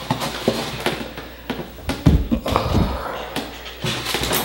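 Blocks of dry ice being set down and shifted in a styrofoam tray: a series of short knocks and scrapes of the blocks against the foam.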